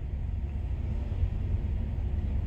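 Steady low rumble of an idling semi truck's diesel engine, heard from inside the cab.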